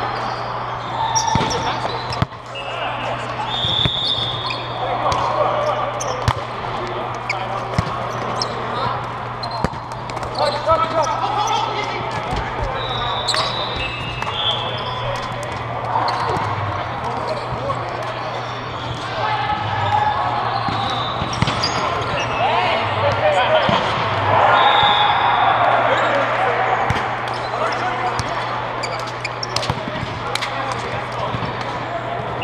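Indoor volleyball play in a large air-supported dome: repeated sharp ball hits and bounces among players' shouts and indistinct chatter, over a steady low hum.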